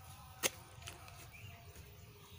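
Short-handled hoe blade striking dry, clumpy soil once, a single sharp chop about half a second in, while digging a shallow planting pit.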